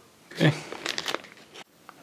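Plastic bag crinkling in the hands in short, scattered crackles, around a single spoken "okay".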